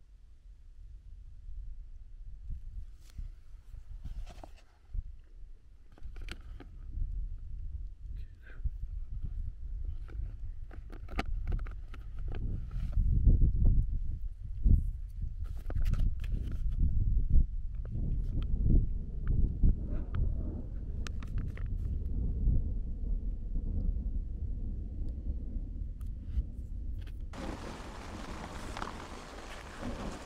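Thunder rumbling and rolling, building to its loudest about halfway through, with scattered light ticks. Near the end it gives way suddenly to heavy rain hammering down on a tent.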